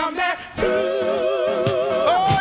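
Gospel vocal group singing with the accompaniment dropped out: after a short dip, about half a second in, the voices hold one long note in harmony with vibrato.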